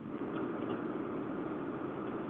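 Steady rushing noise with a low rumble coming over an open telephone line on a video call, muffled by the narrow phone band with nothing above it.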